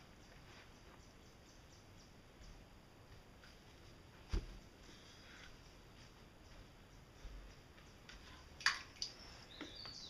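Faint outdoor background with two isolated sharp knocks, one about four seconds in and one near the end, and a brief faint high chirp at the very end.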